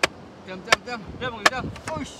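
Sharp knocks of wood being struck, about four in two seconds at uneven spacing.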